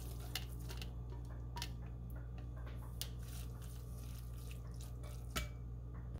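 Spatula scraping and tapping a frying pan as soft, sautéed grated zucchini slides into a glass bowl: a few scattered light taps and soft squishy sounds over a steady low hum.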